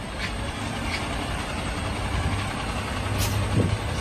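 Car-carrier truck's diesel engine running with a steady low hum as the loaded truck pulls away, with a few short hisses.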